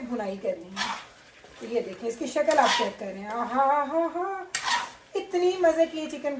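Metal spatula scraping and stirring chicken and masala in a stainless steel pan, with a few sharp scrapes against the metal. A person's voice runs underneath, with no clear words.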